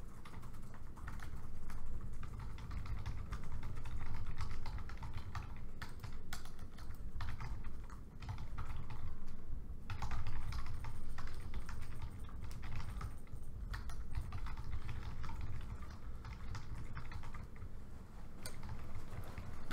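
Laptop keyboard typing: irregular runs of light key clicks with short pauses, over a steady low room rumble.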